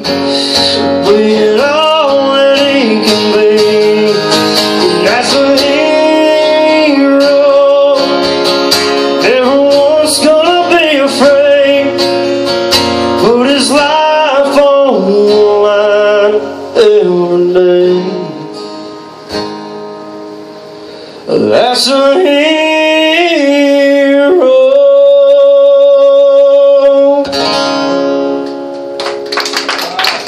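Male voice singing a country song live, accompanied by strummed acoustic guitar. The music drops to a quieter stretch about two-thirds of the way in, then comes back with a long held note shortly before the end.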